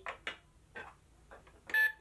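LeapFrog Count Along Register toy scanning an item: a few faint plastic clicks as toy food is handled, then a short electronic beep near the end as the item registers on the red scanner button.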